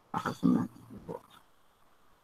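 A man's short wordless vocal sound, about half a second long, just after the start, followed by a fainter murmur about a second in.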